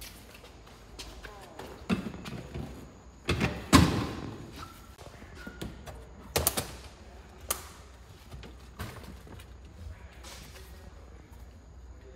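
A series of knocks and thuds from racing bucket seats being handled and set down in a stripped car interior, the loudest about four seconds in, with a few more spaced a second or two apart.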